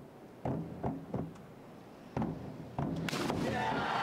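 Diving springboards thudding and rattling several times as a synchronised pair bounce and take off, with another thud about two seconds in, then crowd noise rising near the end.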